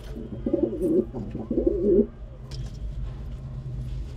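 Domestic pigeon cooing: two low, warbling coo phrases in the first two seconds, over a steady low background hum.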